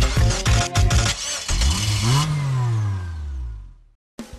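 Intro jingle music with a beat for about a second. It gives way to a synthesized swooping sound effect that rises and then falls in pitch and fades out.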